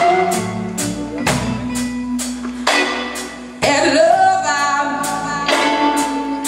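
Live blues band playing a steady beat, drums striking about twice a second over a bass line, with a woman's voice singing a held, wavering line in the second half.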